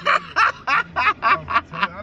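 A man laughing in a run of short, even bursts, about three to four a second, over a steady low car-cabin hum.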